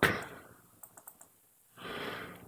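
A man's short, audible in-breath near the end, just before he speaks again, with a few faint clicks a little earlier.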